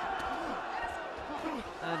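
Boxing arena crowd noise with scattered shouts and a couple of dull thuds from the ring early on.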